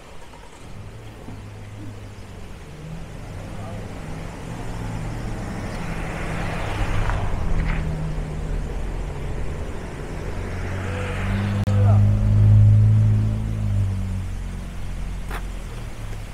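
Motor vehicles driving past on a residential street one after another: a small van's engine and tyre noise swell and pass about seven seconds in, then a second, louder vehicle with a deeper engine hum passes about twelve seconds in and fades away.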